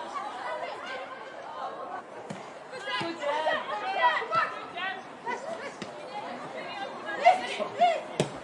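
Players and spectators calling and chattering around a football pitch, with a few sharp knocks of the ball being kicked.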